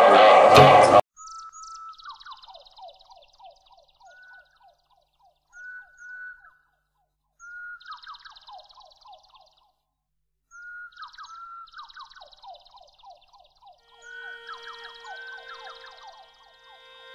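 Loud music stops abruptly about a second in. After it a songbird sings a repeated short phrase: a clear opening note falls into a quick rattling run of lower notes, with fainter high twittering alongside. Soft music with held tones comes in near the end.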